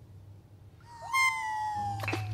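A long, high-pitched, meow-like cry that starts about a second in and slides slowly down in pitch.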